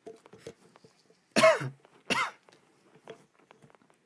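A person coughing twice, the first cough the louder, about three quarters of a second apart.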